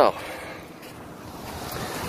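Wind rushing over a phone's microphone, a steady noise that grows a little louder toward the end.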